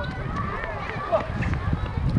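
Outdoor ambience of indistinct voices and chatter with no clear words, over a steady low rumble of wind on the microphone.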